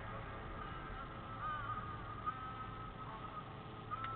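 Low, steady rumble of a car driving slowly, heard from inside the cabin, with a faint wavering high tone over it.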